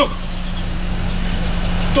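Car engine idling with a steady low hum.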